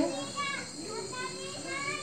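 Faint background voices of children talking and playing while the main speaker is silent.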